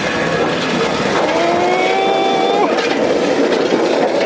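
Wheeled engine rocker covers rolling down a sloped steel chute, giving a steady, loud rumble of small wheels on metal. Over it, a held tone rises slightly from about a second in and drops away before the three-second mark.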